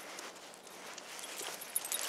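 Dogs walking on leash over a concrete sidewalk: faint footsteps and light clicking of claws on the pavement, the clicks growing more frequent near the end.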